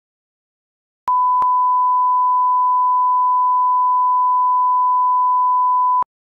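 A steady 1 kHz reference test tone, a pure electronic beep at one constant pitch and level. It starts about a second in with a click, has a second click just after, and cuts off abruptly at the end.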